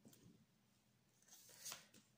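Faint rustle of tarot cards being handled and slid off the deck, with a soft tap at the start and a brief sliding rustle just before the end.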